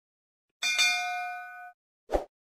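A notification-bell ding sound effect: one bright bell strike just over half a second in, with a few clear ringing tones that fade away over about a second.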